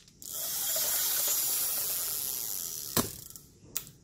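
Spinning fishing reel being cranked by hand: the gears and rotor whir steadily for about three seconds, then stop with a sharp click, followed by a fainter click near the end.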